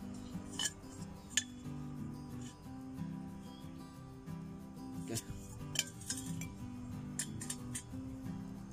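Background music, with about half a dozen sharp metallic clinks as square steel tubing and a steel bar are handled and set down on a stone.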